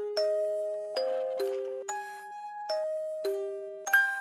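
Instrumental outro of an alternative rock song: a slow melody of single notes, about seven of them, each starting with a sharp attack and held until the next. A louder last note near the end rings on and fades.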